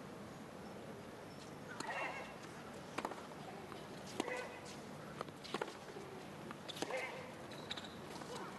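Tennis rally on a hard court: about eight sharp racket strikes and ball bounces, with a short grunt from a player on some of the shots.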